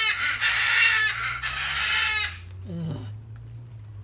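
A rooster crowing: one long, loud, harsh crow that ends a little past two seconds in.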